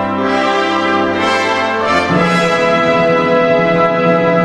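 Orchestral music led by brass, holding full sustained chords; the harmony moves to a new chord with a higher bass note about two seconds in.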